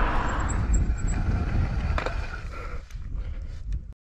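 Mountain bike rolling fast on tarmac, tyre noise under a heavy rumble of wind on the microphone, with a few sharp clicks from the bike in the second half. The sound cuts off suddenly just before the end.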